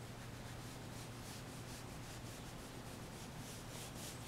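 Chinese ink brush scrubbing wet ink into paper: a run of faint, quick rasping strokes of the bristles on the paper.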